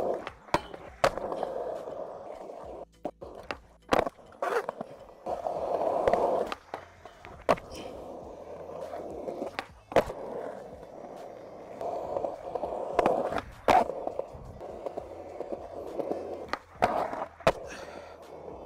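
Skateboard wheels rolling on concrete, broken by repeated sharp clacks of the board popping and landing, several coming in pairs about half a second apart.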